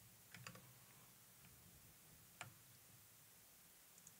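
Near silence broken by a few faint clicks from a computer keyboard or mouse: a quick cluster about half a second in and a single click past the middle.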